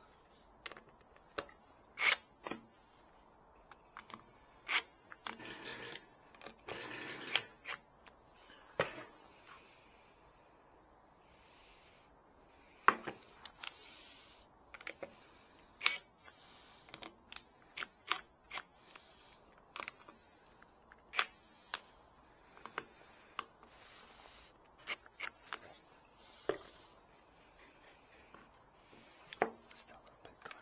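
Irregular sharp clicks and knocks of a cordless drill and a wooden disc being handled on a wooden workbench, with short noisier stretches about six to eight seconds in and again around twelve seconds.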